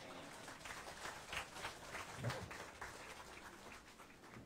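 Faint, steady applause from a church congregation: many hands clapping at once.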